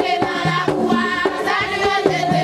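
Vodou ceremonial song: a group of voices singing in chorus over steady percussion strokes.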